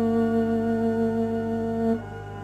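String quartet holding a long, loud sustained note, bowed steadily, which breaks off sharply at the end into a quieter passage.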